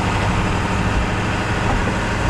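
Steady engine rumble and road noise heard from inside the cabin of a vehicle driving in city traffic.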